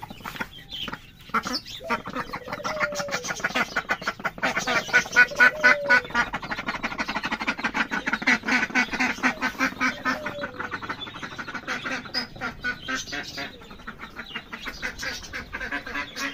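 Newly hatched ducklings peeping in a rapid, continuous chorus, loudest midway. A few short low calls from an adult duck come in now and then.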